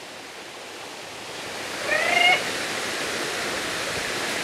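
Water flowing over rock in a shallow stream below a waterfall: a steady rushing noise that grows louder a little before halfway through. A brief high pitched sound comes near the middle.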